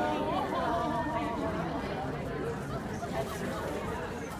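Indistinct chatter of several people talking at once, voices overlapping with no single clear speaker.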